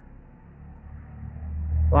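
A low rumble that swells through the second half and stops abruptly as speech resumes, over faint background hiss.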